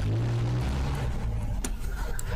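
A steady low hum, with one sharp click about one and a half seconds in.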